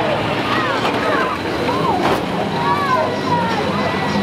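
Engines of several banger-racing vans revving on the track, their pitch rising and falling, with one sharp bang about halfway through.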